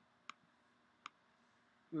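Two short, sharp computer mouse clicks, a little under a second apart, over faint room tone.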